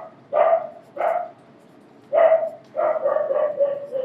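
A dog barking repeatedly, about five short barks with the last one drawn out.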